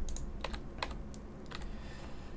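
Computer keyboard keys struck one at a time: about five separate clicks, roughly half a second apart, as the Enter key opens blank lines in the code.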